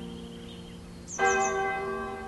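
A church bell tolling: the ring of an earlier stroke dies away, and a fresh stroke sounds a little over a second in and rings on.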